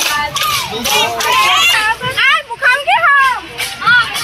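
A crowd of many young voices shouting and calling out over one another, loud and lively.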